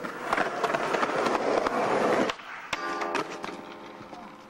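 Skateboard deck sliding down a wet metal handrail in a backside lipslide: a loud scraping noise for about two seconds that cuts off suddenly, then a sharp clack as the board lands, followed by a brief steady ringing tone.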